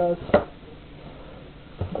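A single sharp knock about a third of a second in, then a soft low thump near the end: handling knocks as the deployed homemade airbags are moved and set down.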